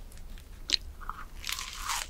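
Close-miked eating sounds of a soft white-bread sandwich: a few faint chewing clicks, then a bite into the bread building to a dense soft rustle near the end.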